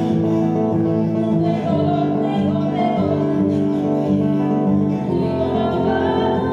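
Nylon-string acoustic guitar played live, held chords with notes that change a few times.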